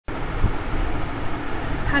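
Steady background noise with a few low thumps under it, like traffic or machinery heard from indoors. A woman starts speaking right at the end.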